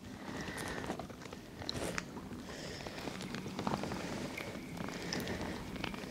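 Fishing reel being worked while playing a hooked kokanee: faint scattered clicks and light rattles of the reel and rod, with a thin whine here and there.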